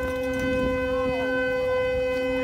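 A car horn sounding one steady, unbroken tone, with faint voices of onlookers underneath.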